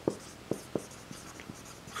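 Marker pen writing on a whiteboard: a series of short, light strokes as letters are written.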